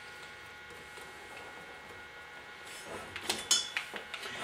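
Quiet, steady room hum, then a few light clicks and a short rattle near the end as the drill-mounted hone is drawn out of the cast cylinder head's valve guide.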